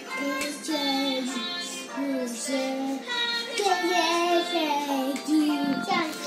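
Children singing a song with music, the voices holding and gliding between notes in a steady melody.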